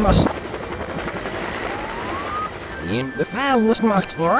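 Soundtrack played backwards: a sudden burst at the start, then a steady rushing noise with a thin tone gliding upward in the middle. Reversed speech comes in near the end.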